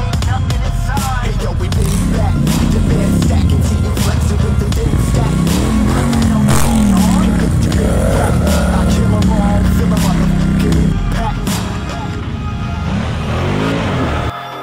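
ATV engine revving up and down as the quad's wheels spin and slide in snow, its pitch rising and falling several times and held high for a few seconds past the middle.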